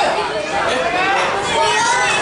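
Several people chattering close by, overlapping voices with no clear words.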